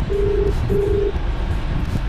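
Phone ringback tone: two short beeps at one low pitch with a short gap between, the double ring of an outgoing call waiting to be answered. A steady low rumble from the car runs underneath.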